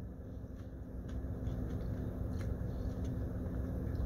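Close-up chewing of a piece of milk chocolate with pretzel bits, with faint scattered crunches, over a steady low hum inside a car.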